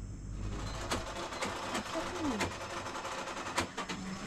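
A handful of sharp, irregular clicks and knocks, about five in all, with a short faint voice sound near the middle.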